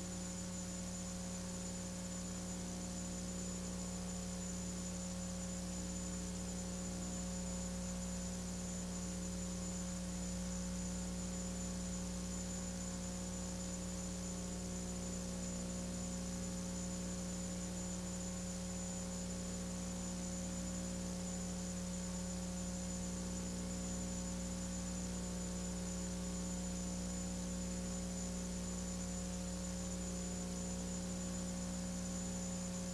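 Steady electrical mains hum with a faint hiss, unchanging throughout, with no other sound.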